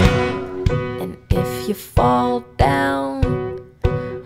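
Instrumental passage of a pop-rock song. The full band drops away at the start, leaving guitar chords struck about every two-thirds of a second, each ringing and fading before the next.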